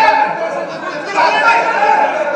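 Several voices talking over one another, a hubbub of overlapping speech.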